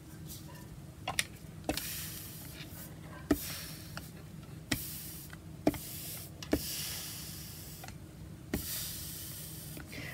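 A small travel iron pressed and pushed back and forth over damp, dyed loose-weave gauze on a wooden board to dry it. Short knocks come as the iron is set down or bumps the board, with a hushing sound on each pass, about once a second or so.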